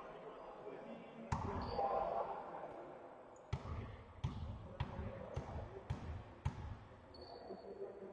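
Basketball bouncing on a sports-hall floor: one bounce, then a steady dribble of six bounces about two a second, in an echoing hall. A few short high squeaks sound in between.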